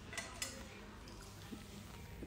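Faint room tone with a few light clicks and clinks in the first half second and one more tick about halfway through.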